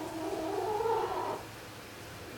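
A poultry bird's call, a single drawn-out pitched note lasting about a second and a half that rises slightly and then falls away.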